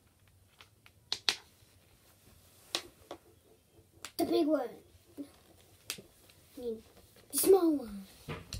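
A child's voice twice without clear words, each a short sound falling in pitch, about four seconds in and near the end, the second the loudest. Before and between them come a few sharp clicks.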